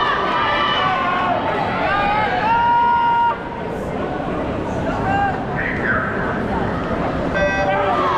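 Crowd chatter and voices of spectators around an indoor pool deck, with a held pitched call about three seconds in and a short electronic-sounding tone near the end.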